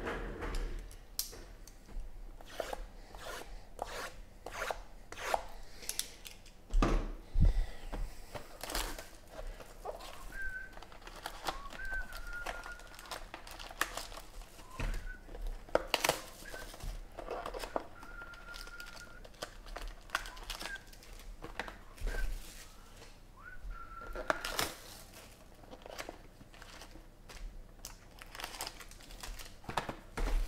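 Hands tearing and crinkling the plastic shrink-wrap on 2017 Panini XR football card boxes and handling the cardboard boxes and foil packs: irregular crackling, tearing and small clicks, with a couple of louder knocks about seven seconds in.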